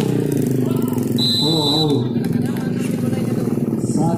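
Voices of players and onlookers over a steady low drone, with one short, steady whistle blast from the referee a little over a second in.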